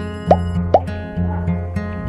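Background music with a steady low bass line and held tones. Over it come three quick, rising plop sounds in the first second.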